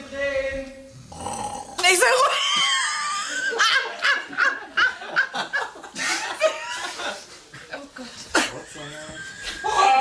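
Hearty laughter from several people, breaking out loudly about two seconds in and going on in waves.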